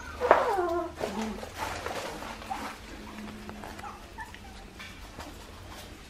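Young Australian Shepherd puppies, about two and a half weeks old, whimpering: one loud cry falling in pitch just after the start, then a few soft short squeaks.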